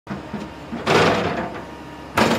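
Sound effect of an animated intro title card: a sudden loud burst of noise about a second in that dies away over about half a second, over a lower, rougher bed of noise.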